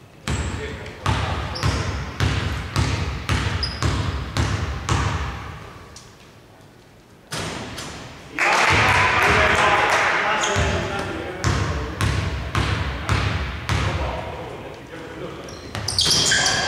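Basketball bounced on a hardwood court, about two bounces a second, in two runs with a pause between them: a free-throw shooter dribbling at the line before his shots. Between the runs there is a louder stretch of noise.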